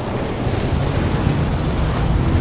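Cinematic intro sound effect: a steady, deep rumble under a rushing noise, with no distinct hits. It builds slightly toward the end.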